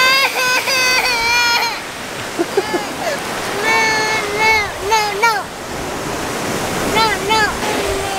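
A toddler whining and fussing in several long, high-pitched wails with short breaks between them, over the steady wash of small waves on the shore.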